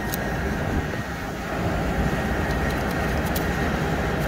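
Steady drone of farm machinery running, with low wind rumble on the microphone and a few faint light clicks.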